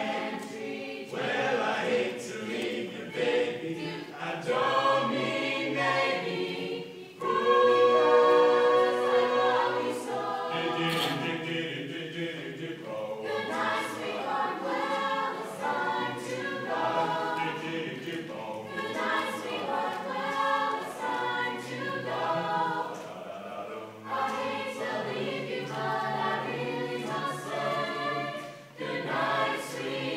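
High school mixed-voice a cappella chorus singing in parts, voices only with no instruments, swelling louder for a few seconds about seven seconds in.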